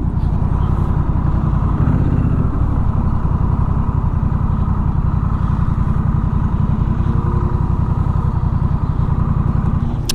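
Honda Rebel 1100's parallel-twin engine idling steadily with an even low pulse.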